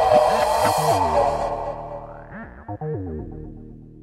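Goa trance music in a breakdown with no kick drum: a bright synthesizer wash fades out over the first second or so, leaving sliding synth notes that repeat as the music grows steadily quieter.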